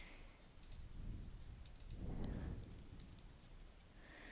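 Faint computer mouse clicks and keyboard keystrokes, a scattering of short sharp ticks, while a search term is typed into a spreadsheet dialog. A soft low rumble comes about two seconds in.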